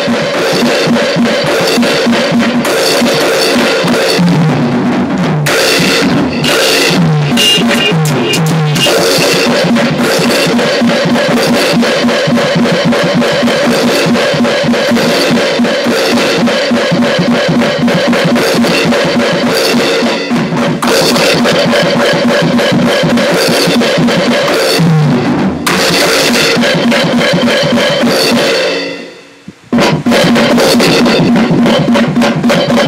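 Fast punk rock song playing, with drums played along on a Yamaha DTX electronic drum kit: driving bass drum and snare under steady distorted instruments. The music drops out briefly about a second before the end, then comes straight back in.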